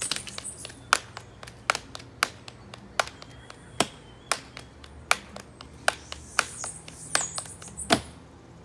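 Two people clapping a rhythm together in unison. Sharp hand claps come roughly every half second, with softer claps between.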